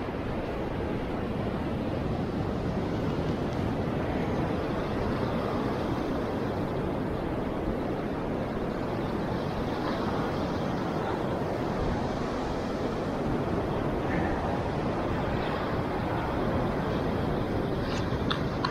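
Steady rushing noise of sea surf on a beach, mixed with wind on the microphone.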